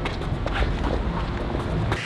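Scuffling footsteps and shoe scrapes on pavement as two men grapple, over street noise.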